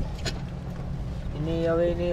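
A low, steady background rumble with one faint knock a quarter second in, then a man's voice holding a drawn-out sound for the last half second or so.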